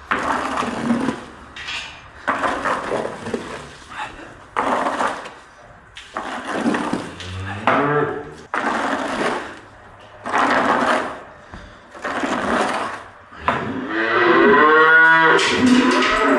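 Cow mooing: a short low moo about halfway through and a long, loud moo near the end. Under it, repeated scraping strokes every second or two, a manure scraper working the concrete barn floor.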